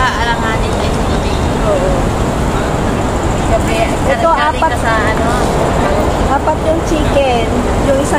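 Steady low road-traffic rumble of a city street, with bits of nearby women's conversation over it.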